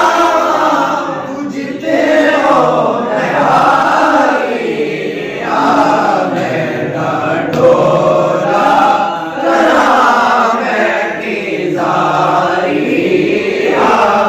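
Several men's voices singing a naat together without instruments, in long drawn-out phrases with short pauses for breath between them.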